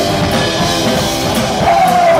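Rock band playing live: distorted electric guitar, bass and drum kit, loud and steady. Near the end a held, wavering note slides in above the band.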